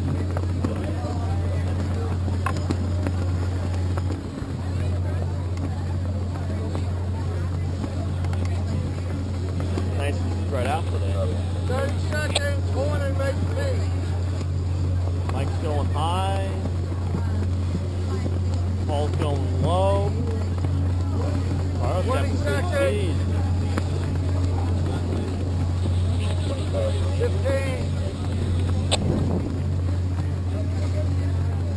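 A steady low motor hum, with indistinct voices talking at intervals over it.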